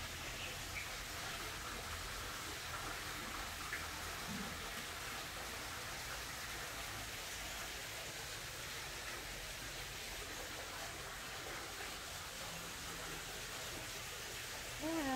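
Low steady hiss of outdoor background noise, with a few faint short chirps in the first four seconds.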